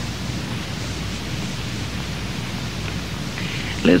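Steady hiss with a low hum underneath: the recording's background noise in a pause between spoken phrases. A man's voice starts again right at the end.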